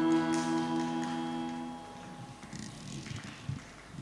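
The held chord of a harmonium drone fades out as the closing piece ends, dying away about two seconds in. After that there are only faint, scattered clicks and small knocks.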